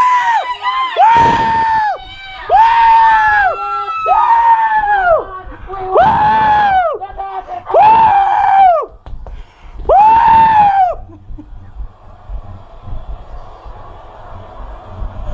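Fans screaming in celebration of a game-winning final strikeout: about seven long screams, each rising and then falling in pitch, one after another, dying down near the end.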